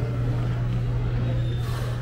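A steady low mechanical hum, like a running engine or machine, over outdoor street background noise.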